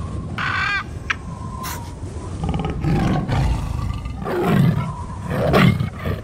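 Animal sound effects over an animated logo: a short high call about half a second in, then repeated tiger roars in rough bursts, the loudest near the end.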